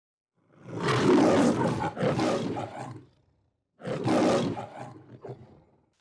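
Two long roars: the first starts about half a second in and lasts some two and a half seconds, the second starts near four seconds and tails off.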